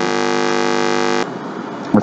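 A loud, steady electrical buzz with many overtones that cuts off suddenly a little over a second in, leaving faint background hiss.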